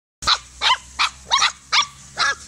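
Puppy yapping: five short, high-pitched yaps in quick succession, about two and a half a second.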